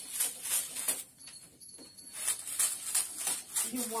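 Wrapping paper rustling and crinkling as it is handled, in short irregular crackles.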